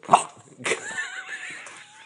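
French bulldog puppy giving a drawn-out, wavering whine, about a second and a half long, starting roughly half a second in.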